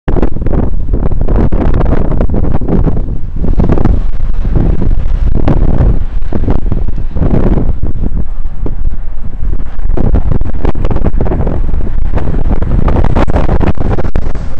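Loud, gusting wind rumble buffeting the microphone of a moving cyclist's camera.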